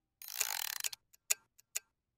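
Toy wind-up kitchen timer: its dial is turned with a short ratcheting whirr, then it ticks at an even, steady pace of about two ticks a second.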